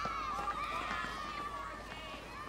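Children shouting and calling out at play in a schoolyard: many high-pitched voices overlapping, with no clear words.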